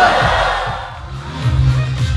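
Crowd cheering that fades away over the first second, then music with a heavy bass beat coming in about halfway through.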